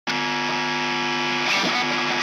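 Opening of a rock song: a sustained guitar chord that starts abruptly and is held steady, its notes beginning to move about one and a half seconds in.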